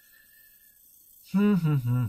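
About a second of quiet room hiss, then a man's voice sets in with a drawn-out wordless vocal sound that starts higher, falls in pitch and settles into a low steady hum.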